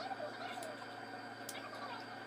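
A metal spoon clinks twice against a bowl while eating, with faint wavering animal calls, like fowl clucking, in the background.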